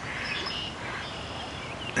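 Quiet riverside outdoor background with a few faint, short bird chirps.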